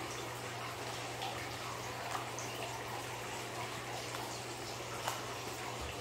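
Steady background hiss with a low hum, and a few faint soft taps, about two and five seconds in, as oracle cards are laid down on a bamboo mat.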